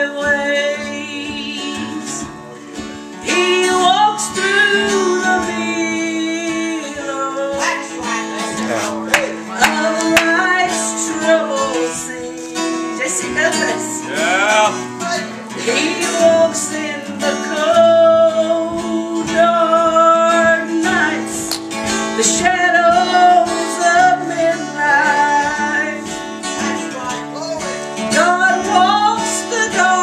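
A woman singing a gospel song, accompanied by a strummed acoustic guitar.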